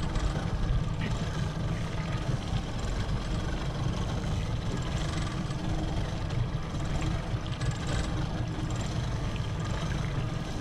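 Twin outboard motors on a fishing boat running at low speed: a steady low rumble with a faint hum.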